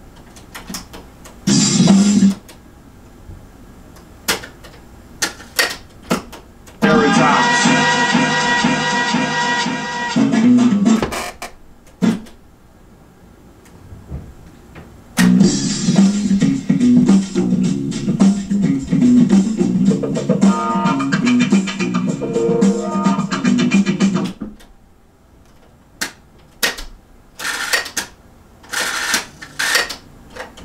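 Music from a cassette tape playing back in snatches on a cassette deck: a half-second blip, then about four seconds, then about nine seconds. Each snatch is cut off by the clicks of the deck's transport and pause buttons as the tape is cued to the first beat of the loop.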